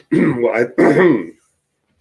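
A man's voice making two short drawn-out vocal sounds, not clear words. About a second and a half in it cuts off suddenly into silence as the video call drops out.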